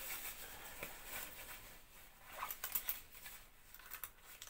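Fabric of a padded coat rustling as its belt and buckle are handled, with a quick cluster of small clicks and taps from the buckle a little after halfway.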